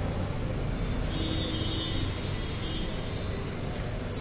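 Steady background noise with a low steady hum, with faint steady tones coming in about a second in and fading near the end.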